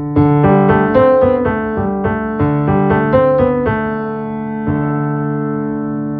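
Piano playing a short phrase of changing notes over a sustained low note, then a new chord struck just before five seconds in and left to ring.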